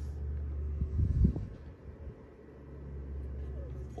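Low steady background rumble, with a soft low knock about a second in.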